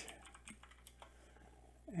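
A few faint computer-keyboard keystrokes: typing a short layer name.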